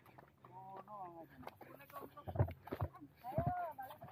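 Faint, indistinct voices of people talking as they walk, with a few dull thumps, the loudest about two and a half seconds in.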